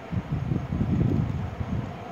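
Low, irregular rumbling noise on the microphone, fluttering unevenly and easing off near the end.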